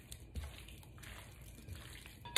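Faint wet squishing of sliced steak being tossed in a sticky marinade with silicone-tipped tongs in a glass bowl, with a light tap about half a second in.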